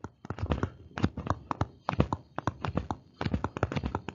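Stylus tapping and clicking on a tablet surface as letters are handwritten quickly: a rapid, irregular run of small clicks, several a second.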